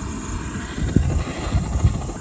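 Jet-flame torch lighter burning with a low, uneven rumble while held to kindling to light a campfire.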